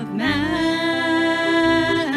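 A worship band playing a praise song: a singer slides up into one long held note over instrumental accompaniment.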